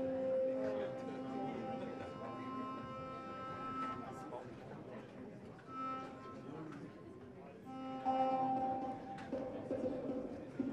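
Modular synthesizer playing sustained, droning pitched tones that swell and fade. A higher layer of notes comes in a couple of seconds in, and a louder tone rises near the end.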